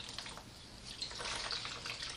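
Water wrung from a washcloth trickling and splashing over a hand into a plastic basin of water as the hand is rinsed, growing louder about a second in.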